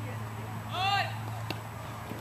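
One loud, high-pitched shouted call a little under a second in, followed by a single sharp click about a second and a half in, over a steady low hum.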